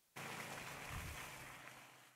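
Faint, even rushing noise that starts just after the beginning and fades away towards the end.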